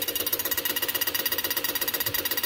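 A motor turning the ignition over: a rapid, even mechanical clatter of about a dozen pulses a second, with a steady whine, running without change.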